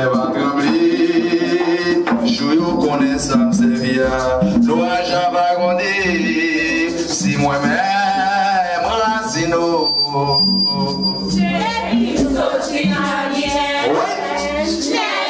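Vodou ceremonial song: voices singing a chant, accompanied by a shaken rattle and hand drums.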